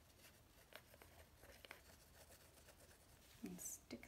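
Near silence: room tone with a few faint, short ticks of paper and a glue bottle being handled.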